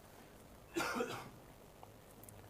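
A single short cough about a second in, against quiet room tone.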